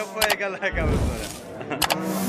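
Two sharp click sound effects, about a second and a half apart, from an animated like-and-subscribe button overlay, heard over background voices and a brief low rumble.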